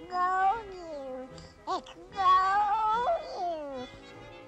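A cartoon character's whining, meow-like cry in several calls: a falling glide, a short rising-and-falling yelp, then a longer wavering cry that slides down at the end. Orchestral cartoon score plays under it.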